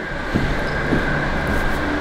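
Steady machine drone: a low hum with a thin high whine over a noisy hiss, holding level throughout.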